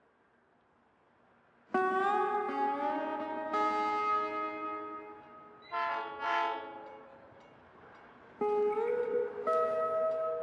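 Train horn chords. After near silence, a first blast starts suddenly about two seconds in with its pitch bending up, then holds and fades. A shorter, wavering blast comes around six seconds, and another rising blast comes in near the end.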